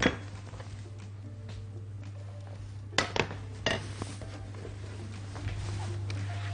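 Cookware and glass on a kitchen counter clinking: a few sharp knocks about three seconds in, with a faint clink at the start, over a steady low hum.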